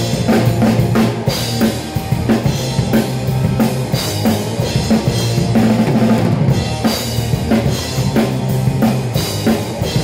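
Rock band playing live: a drum kit keeps a steady beat on bass drum, snare and cymbals over electric guitars and bass guitar.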